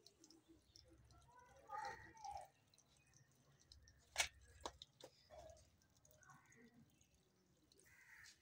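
Near silence, broken by a few small, sharp clicks about halfway through, from hands handling a fibre-optic fusion splicer and its fibre holder.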